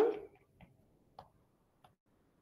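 A woman's word trailing off, then three faint, sharp clicks about half a second apart: a stylus tapping on a tablet screen as she writes.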